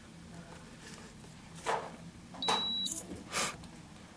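A radio-control transmitter in binding mode gives one short, high electronic beep about two and a half seconds in. A few soft bursts of noise come before and after it.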